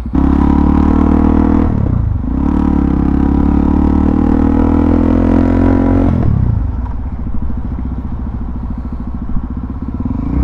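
Suzuki DR-Z400SM's single-cylinder four-stroke engine pulling hard under throttle. There is a brief dip about two seconds in, then it pulls again. About six seconds in it eases off to a lower, steadier running note.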